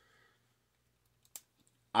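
Near silence with a single short click a little past the middle, then a man's voice starts right at the end.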